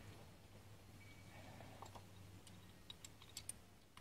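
Near silence with a faint low hum, broken in the second half by a few faint, sharp clicks of metal Holley carburetor parts being handled as the fuel bowl is worked loose.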